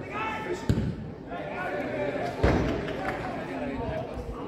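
Two dull thuds of a football being kicked, one just under a second in and a louder one past the middle, amid voices calling out across the pitch.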